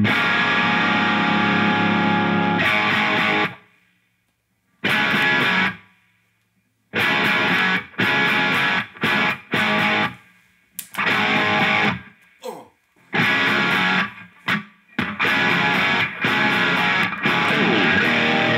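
Electric guitar with P90 pickups, played through a Line 6 Helix on a distorted Plexi amp model. A long chord rings out for about three seconds; after a break comes a short stab, then a choppy rock riff of chords cut off between hits.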